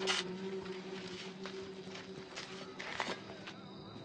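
Shovelfuls of dirt thrown into a grave: a sudden spill right at the start and another about three seconds in, with smaller scattered patters between.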